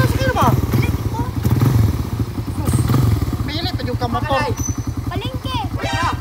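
Small motor scooter engine idling steadily, its even low putter running under people's voices.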